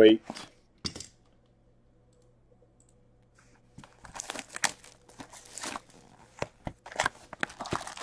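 Plastic shrink wrap crinkling and tearing as a sealed hockey card hobby box is unwrapped and opened. It starts with a couple of light clicks, goes quiet, then breaks into an irregular run of crackly crinkling from about four seconds in.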